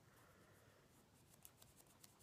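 Near silence: room tone, with a few faint, short ticks in the second half.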